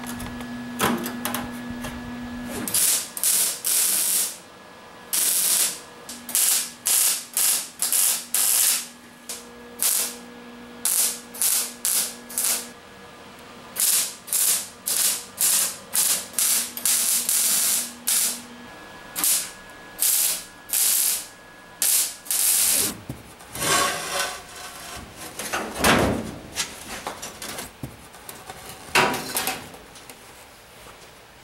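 MIG welder laying a stitch weld on a sheet-steel roof seam: a run of short crackling bursts, each under a second, with brief pauses between them. Near the end the welding stops and a few knocks and scrapes of metal follow.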